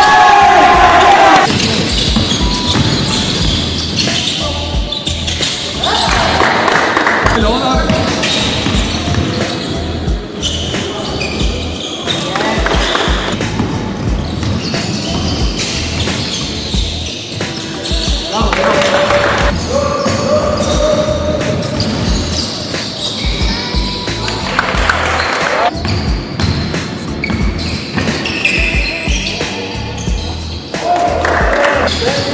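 Basketballs bouncing on a wooden gym floor during a game, with players' voices calling out across a large sports hall.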